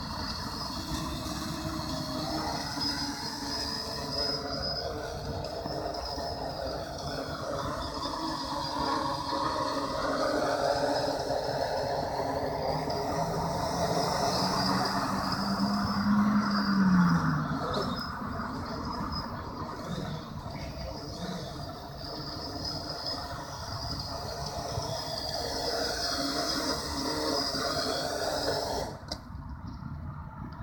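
A quadcopter's four brushless motors and propellers buzzing steadily as it hovers in altitude hold, with the pitch drifting slowly up and down as the flight controller trims the throttle. The motors cut out suddenly near the end as it lands.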